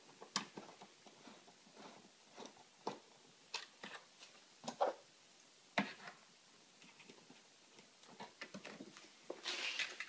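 Faint, scattered clicks and taps of a screwdriver and needle-nose pliers working a tail-light mounting screw loose and out, with a short rustle of clothing brushing close by near the end.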